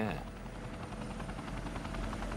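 Chinook tandem-rotor helicopter hovering, its rotors and engines running steadily with a rapid, even rotor beat.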